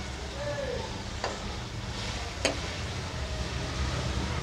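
Keema and tomatoes sizzling steadily in a frying pan while being stirred, with two sharp clicks of the metal spatula against the pan, about a second and two and a half seconds in.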